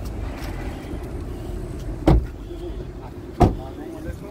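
Two sharp thumps about a second and a half apart, over a steady low rumble.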